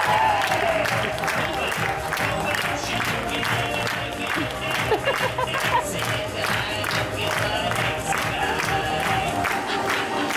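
Upbeat dance music playing in a theatre, with the audience clapping along in time, about two to three claps a second.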